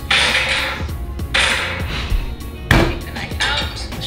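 Background music over a large knife being forced through a raw spaghetti squash's hard rind: long gritty cutting noise, then a sharp thunk about two-thirds of the way through.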